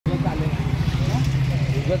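A vehicle engine running with a low, steady drone, with people talking over it.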